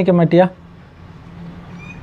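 A man speaking in Tamil stops about half a second in, leaving a pause filled with low, steady background hiss and hum. Near the end a brief, faint, high-pitched call is heard.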